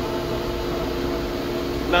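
Steady hum of workshop machinery running, several steady tones held over a low rumble.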